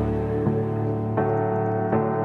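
Slow piano chords in an epic pop song, a new chord struck roughly every three quarters of a second, with no vocal in this gap.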